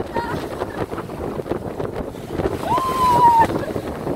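Wind buffeting the microphone and water rushing along the hull of a sailboat sailing close-hauled. About three quarters through, a short high-pitched tone rises and is held for nearly a second.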